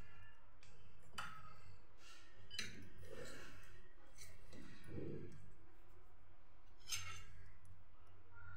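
A few light clicks and clinks of kitchenware around a ceramic serving bowl, the sharpest near the end, over a low steady hum.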